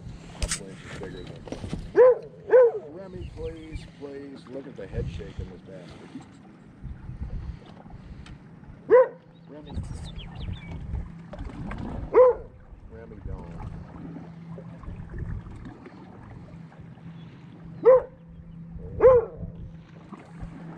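A Labrador retriever barking: six single short barks, two close together near the start, two spread through the middle and two near the end, over a steady low hum.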